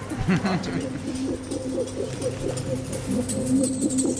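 Indistinct voices and vocal sounds from a documentary clip playing over loudspeakers, a run of short wavering calls with no clear words.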